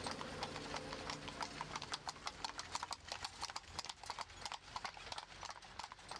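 Faint clip-clop of a horse's hooves, many quick hoofbeats in an even run, the sound of a horse-drawn tram (konka).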